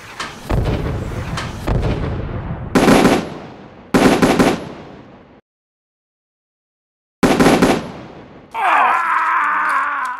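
Battle sound effects of gunfire: several sharp shots, each with a trailing echo, come one after another in the first five seconds. After a pause there is another shot, and near the end a long pitched cry.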